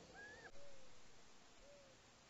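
Faint bird calls: a short rising-and-falling call just after the start, then soft, low, slightly falling hoots repeated about a second apart.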